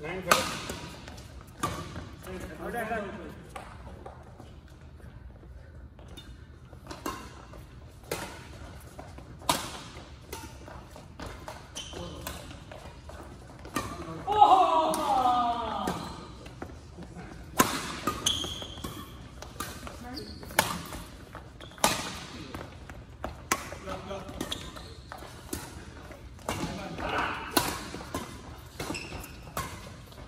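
Badminton rackets striking a shuttlecock through doubles rallies: sharp cracks about every second or two. Players' voices call out at times, loudest about fourteen seconds in.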